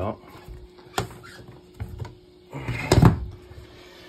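Click-together laminate flooring planks being unclipped and lifted off the floor by hand: a sharp click about a second in, then a louder knocking, scraping burst near three seconds.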